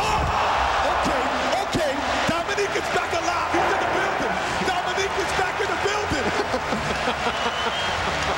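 Arena crowd cheering and shouting right after a one-handed windmill dunk, a steady roar of many voices.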